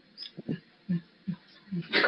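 About five short, faint vocal sounds from a man with motor neuron disease, whose speech is impaired by the illness.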